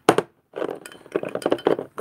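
A glass perfume bottle handled right against the microphone: a sharp knock just at the start, then, about half a second in, a dense run of glassy clicks and rubbing as it is turned in the hands.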